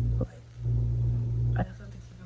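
A woman speaking, with a low hum under her voice that comes and goes in stretches.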